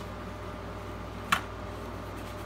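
One short sharp click about halfway through: a Kydex holster's speed clip coming off the belt. Under it, a steady low hum.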